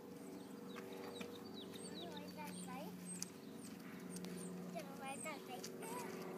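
Faint, repeated high chirps, each sliding quickly downward: small birds calling, with quiet voices and a steady low hum underneath.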